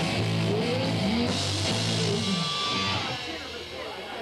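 Rock band playing live on electric guitar, bass and drums through the final bars of a song. The band stops about three seconds in, leaving a fainter wash of ringing and faint voices.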